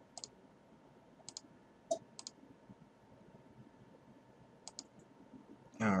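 Scattered light clicks of a computer mouse, about nine in all, several coming in quick pairs.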